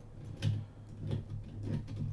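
LEGO Technic transmission being turned by hand in its driving direction against resistance on the output: plastic gears and shafts giving a series of small, irregular ticks.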